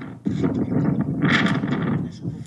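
Rustling and scraping handling noise on a police body camera as its wearer moves out of a patrol car, with a brighter scrape about a second and a half in.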